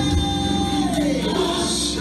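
Gospel song with choir singing, played over the church loudspeakers. A held sung note slides downward in pitch about a second in.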